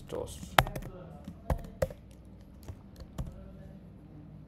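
Computer keyboard keys being struck irregularly while code is typed, a scattering of sharp clicks with a few louder strikes, the loudest about half a second in.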